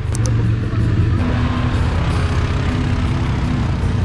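A group of ATVs (quad bikes) running on a dirt track with a steady engine drone.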